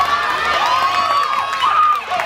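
Crowd of spectators and players shouting and cheering as a softball play unfolds, several high voices overlapping with one long held yell that breaks off near the end.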